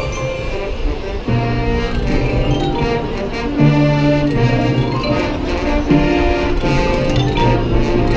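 High school marching band playing its field show: sustained chords that step up in loudness a little over a second in and again about three and a half seconds in.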